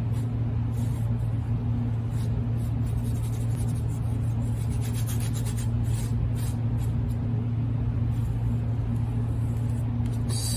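A round paintbrush rubbing acrylic paint onto a canvas in short strokes, faint under a steady low hum.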